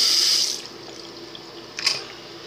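Bathroom sink tap running, then turned off about half a second in. A single short knock near the end.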